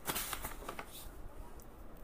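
Paper pages of a softcover workbook being flipped by hand: a rustling riffle of pages in the first second that thins out to a few faint paper rustles as the book is pressed open.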